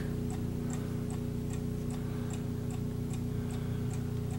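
Key-wound mechanical mantel clock ticking steadily, an even tick two or three times a second: the movement is running. A steady low hum lies under the ticks.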